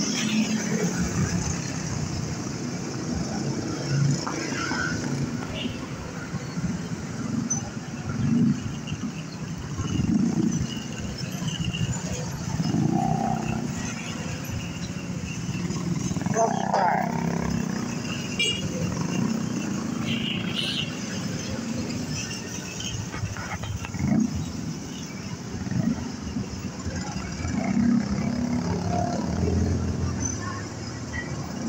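Motorcycle riding through city street traffic: its engine runs, and the low rumble swells and eases every few seconds, mixed with the noise of the surrounding street.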